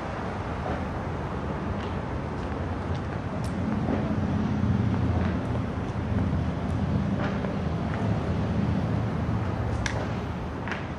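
A low mechanical rumble that swells about four seconds in and eases off toward the end, with a few faint clicks over it.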